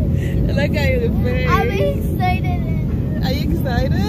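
Steady low rumble of a Southwest Boeing 737's cabin in flight, heard from a window-row seat, with high-pitched children's voices over it.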